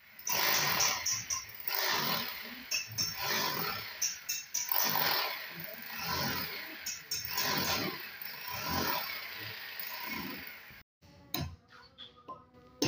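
Electric demolition hammer with a chisel bit breaking up ceramic floor tile and the concrete beneath, a loud rapid hammering that swells and eases as the bit bites in. It cuts off abruptly near the end.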